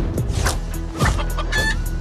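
Music from an animated film's trailer, with short animal calls over it.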